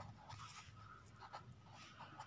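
Black marker pen writing on lined notebook paper: faint, short strokes of the tip across the paper as letters are formed.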